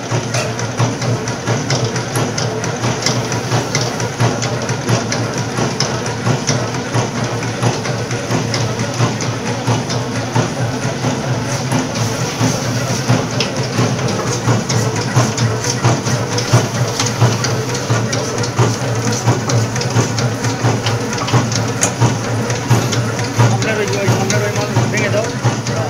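Batasa (sugar-drop) making machine running, a steady mechanical clatter and hum with many small clicks, mixed with music.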